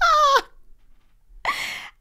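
A woman's high-pitched vocal exclamation that falls in pitch over about half a second, then a short breathy sound about a second and a half in.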